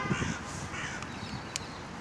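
A bird calling faintly, with one sharp click about one and a half seconds in.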